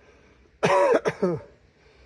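A man's short cough, starting about half a second in and lasting under a second, in two quick bursts.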